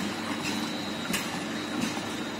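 EDW-15 bead mill and its two pumps running steadily with a faint hum, while the discharge hose pours a stream of liquid that splashes into a stainless steel drum.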